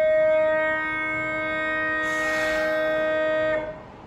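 Train horn sounding one long steady blast, with a second, lower tone joining about a second in. It stops sharply shortly before the end, with a hiss partway through.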